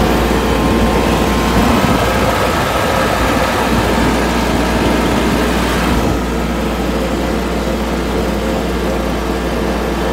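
Tractor engine running steadily as the tractor drives along a paved road, the sound a little duller from about six seconds in.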